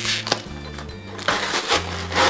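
Background music with a steady bass line, over two bursts of crinkling and tearing as a cardboard box and its plastic packaging are pulled open.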